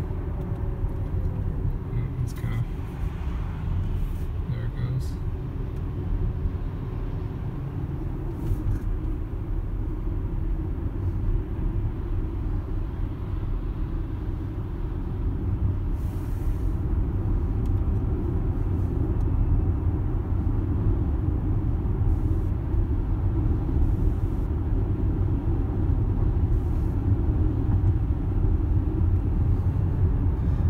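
Road and tyre noise inside the cabin of a Tesla Model X electric SUV cruising on a highway: a steady low rumble with no engine note, growing a little louder in the second half as the car speeds up.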